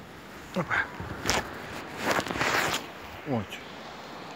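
Short bursts of crunching, rustling noise, one about a second in and a longer one around two seconds, as a kitten is scooped up out of snow, between a man's brief exclamations.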